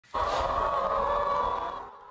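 A news programme's opening sting: a held, tone-rich electronic chord that comes in abruptly and fades away just before the two-second mark.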